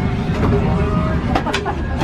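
Airliner cabin ambience while parked at the gate: a steady low rumble of the cabin ventilation, with passengers' voices in the background.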